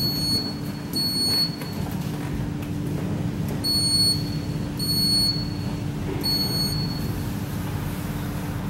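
Orona elevator hall call button beeping as it is pressed: five short high electronic beeps, the first as the up button lights, the rest spaced irregularly over the next six seconds. A steady low hum runs underneath.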